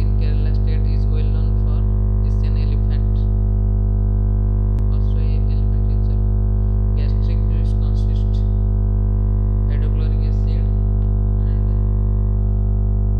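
Loud, steady electrical hum, a buzz with many overtones that never changes in level, swamping the recording as a fault in the audio. Faint bursts of a voice come and go over it.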